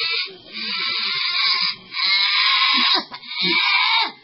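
Long, harsh, strained cries from a voice, three in a row, each a second or more long with short breaks between them.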